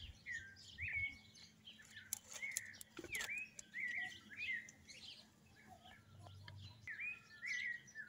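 Small birds chirping, short high chirps repeated about once or twice a second, fairly faint, with a few brief light clicks near the middle.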